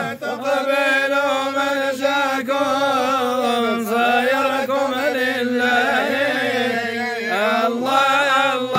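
A group of men chanting religious praise (dhikr) together in long, drawn-out, slowly wavering notes.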